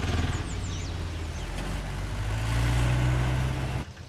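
Small three-wheeled goods carrier's engine running as it drives along the street, getting louder a couple of seconds in, then cut off abruptly just before the end.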